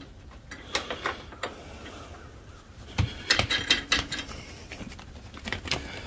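Steel hitch bracket and fittings being rocked and worked into place by hand on a garden tractor's three-point hitch: scattered metal clicks and knocks, with a quick cluster about three to four seconds in.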